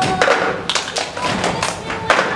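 A group of performers playing the cup-song rhythm with plastic cups: the cups are thumped and tapped on wooden tabletops in a quick, uneven pattern of knocks.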